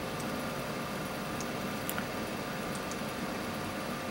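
Steady room tone: an even background hiss with a low hum, and a single faint click about two seconds in.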